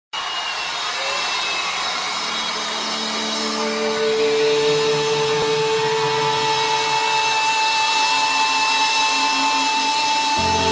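Intro of a live concert recording: long held instrument notes that step from low to higher pitches over a steady wash of crowd noise. The whole grows slightly louder, building toward the band's entry.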